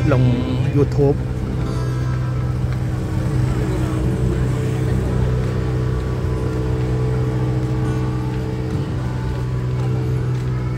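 Street crowd ambience: a steady low hum with music playing, and faint chatter of people walking about.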